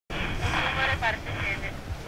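Voices shouting, loudest in the first second, over a low buffeting rumble of wind on the microphone.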